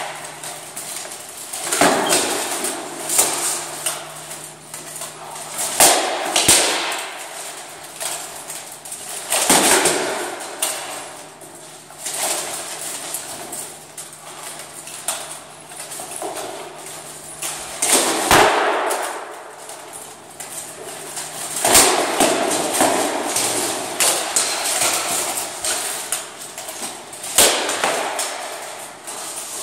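Armoured sparring: practice swords striking steel plate armour and wooden shields, irregular sharp clangs and knocks every second or two, each echoing in a large hall, with armour plates rattling as the fighters move.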